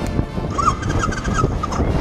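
A low rumble of wind and the Royal Enfield Classic 500's air-cooled single-cylinder engine idling. About half a second in comes a short run of high, clipped notes.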